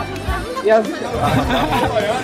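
Many voices chattering at once, with background music underneath.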